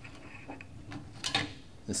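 A few faint, light clicks from a fuel pump module's level sending unit and flange being handled as the sender is fed by hand into a fuel tank's opening.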